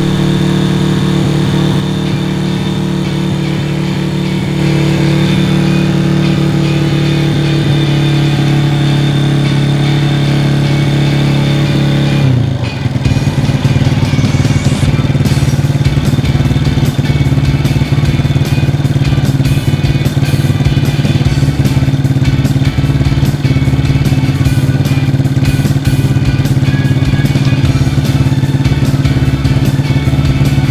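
Honda Astrea's single-cylinder four-stroke motorcycle engine running on a test start after a rebuild with a new block and piston, its valve clearance deliberately set loose. It runs steadily, then about twelve seconds in becomes louder and rougher.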